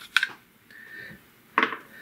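Small plastic clicks and a light knock as an AA battery is pulled out of a wireless mouse's battery compartment and handled: a couple of sharp clicks near the start and a louder rustling knock about one and a half seconds in.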